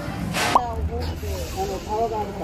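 A short slurping sip of a drink from a mug, ending with a click, then voices in the background.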